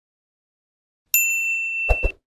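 Notification-bell 'ding' sound effect: a single bright ringing tone, held about a second, starting about halfway in. Near the end, a quick double mouse-click sound effect.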